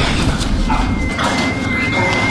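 Repeated thuds of kicks and stomps landing on a body, a staged beating in a film soundtrack. A thin, steady high whine comes in about a second in.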